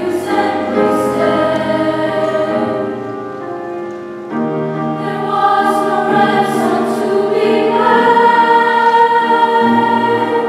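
Women's choir singing held chords in several parts. The sound eases off briefly about four seconds in, then swells louder toward the end.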